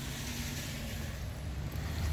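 Steady low rumble of outdoor background noise with a faint even hiss, no distinct event.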